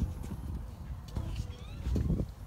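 A toddler's hands and knees knocking and patting on a stone-tile floor as she crawls over a doorway threshold, a few short knocks over a low rumble on the microphone. A few faint high chirps come in about one and a half seconds in.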